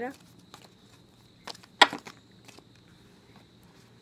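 A deck of cards being handled and shuffled by hand: a few light, scattered clicks and taps, with one louder sharp snap a little under two seconds in.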